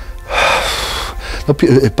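A man's sharp, audible intake of breath, lasting under a second, about a third of a second in.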